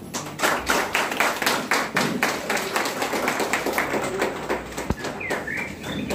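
A small audience clapping, dense and irregular, dying away about five seconds in; a few bird chirps follow near the end.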